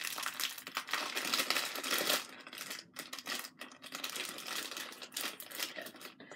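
Packaging of a Minions blind-box figure being opened by hand, crinkling and rustling as it is torn open. The rustling is continuous for about the first two seconds, then comes in short, irregular bits.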